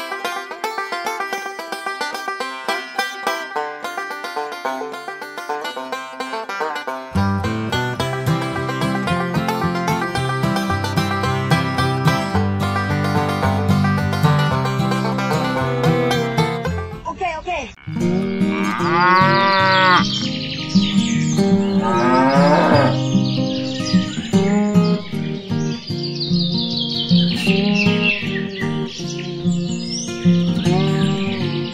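Cheerful background music with a plucked-string melody, joined by a bass beat about a quarter of the way in. In the second half, cow moo sound effects rise and fall in pitch over the music, twice in quick succession.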